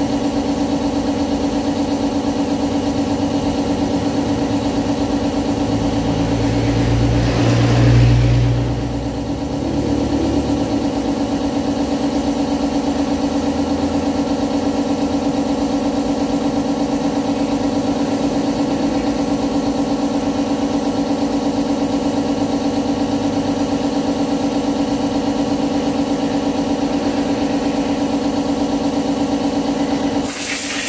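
Steady, loud engine-like motor hum at an unchanging pitch, with a brief louder swell and low rumble about eight seconds in.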